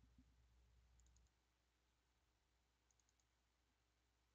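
Near silence with faint computer mouse clicks: a quick cluster about a second in and another near three seconds, as folders are opened in a file dialog.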